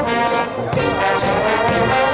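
Marching brass band playing a tune, trombones and trumpets over sousaphone bass, with regular drum beats.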